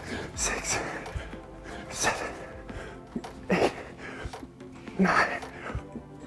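A man's forceful breaths and grunts with each dumbbell push press rep, about one every second and a half, over background music.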